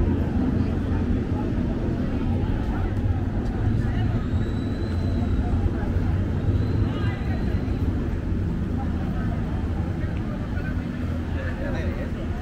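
Busy street ambience: people talking as they walk by, over a steady low engine rumble, with a faint high tone heard twice near the middle.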